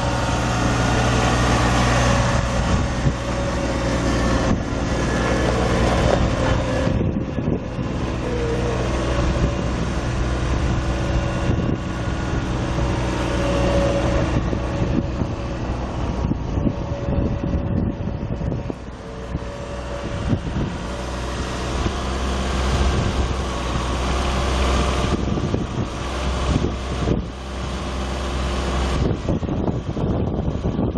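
John Deere LV2210 compact tractor's three-cylinder diesel engine running steadily.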